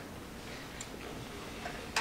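Quiet lecture-hall room tone with a faint click a little under a second in and a sharper click at the very end.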